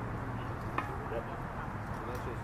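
Quiet outdoor background: a steady low hum with faint, brief voices and no clear blade contact.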